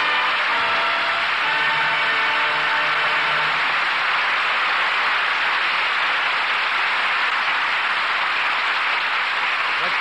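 Studio audience applauding steadily as a live radio drama ends, over closing music that fades out about four seconds in.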